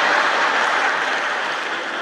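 Large audience applauding, a steady wash of clapping that slowly fades.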